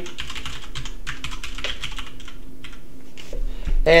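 Computer keyboard typing: a quick run of keystrokes that thins out after about three seconds.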